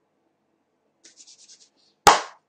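Near silence: faint room tone, with a brief quick run of faint scratchy rustles about a second in.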